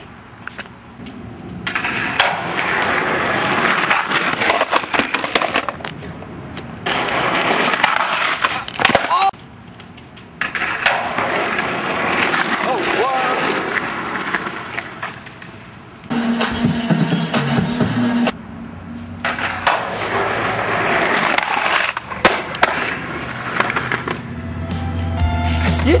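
Skateboard wheels rolling over rough concrete in several loud, rushing runs broken by short pauses, with a few sharp knocks from the board.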